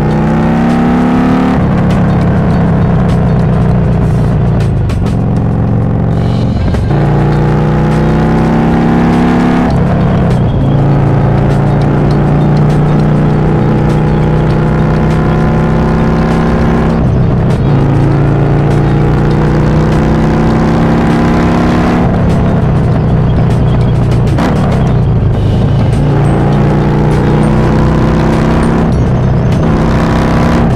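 Harley-Davidson Iron 1200 Sportster's air-cooled V-twin through a Cobra El Diablo 2-into-1 exhaust, accelerating through the gears. The engine note climbs steadily and drops sharply at each upshift, several times over.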